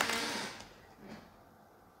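A man's breath, a soft hiss that fades away within about half a second, then near-silent room tone.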